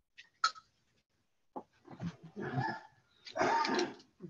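Soft pastel stick rubbed across fine-grit sanded pastel paper (UArt): two short scratchy strokes in the second half, after a light tap about half a second in.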